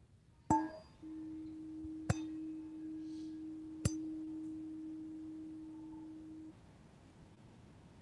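A chime is struck once, then one steady ringing tone is held for about five seconds and stopped short, with two sharp taps during it. It marks the close of a shared moment of silence.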